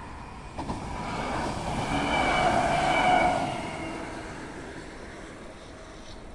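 A passing vehicle that swells to its loudest about two to three seconds in and then fades away, with a steady whine running through it.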